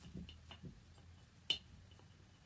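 Small wooden beads on macrame cord clicking faintly as they are handled while a knot is tied: a few soft ticks, then one sharper click about a second and a half in.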